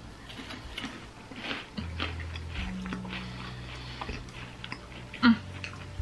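Two people biting into and chewing chocolate bars, with soft, irregular mouth clicks. A low, steady hummed 'mm' comes in about two seconds in.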